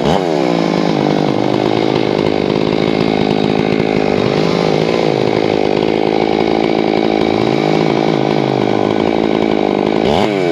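Ported Stihl 461 chainsaw with a 28-inch bar cutting through a tamarack log at full throttle, the engine holding a steady note under load. Its pitch drops right at the start as the chain bites into the wood.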